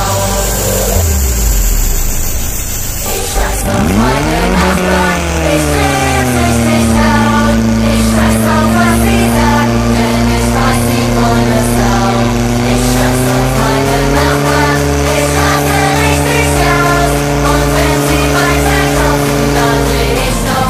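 Portable fire pump's engine revving up sharply about four seconds in, then running steadily at high speed, its pitch stepping up a little further on. A song plays along underneath.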